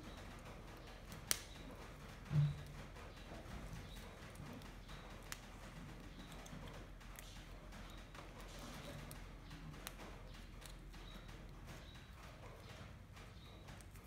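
Faint scattered clicks and crunches of raw green beans being chewed by a baby monkey and snapped and handled by hand, with a single dull thump about two and a half seconds in.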